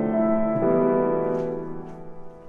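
Piano chords played slowly and held: a new chord is struck about half a second in, then rings out and fades near the end.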